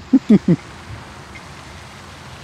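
A man laughs in three short bursts at the very start, then only a steady background hiss remains.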